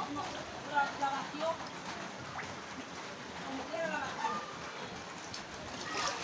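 Steady rain hiss, with faint voices in the background.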